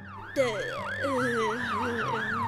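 Ambulance siren sound effect starting about half a second in, its pitch sweeping up and down quickly, about four times a second, in a fast wee-woo yelp.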